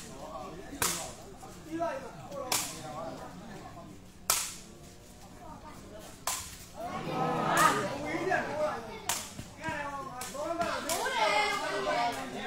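A sepak takraw ball being kicked back and forth in a rally: a series of sharp smacks, roughly one every two seconds. Voices rise in the background from the middle on.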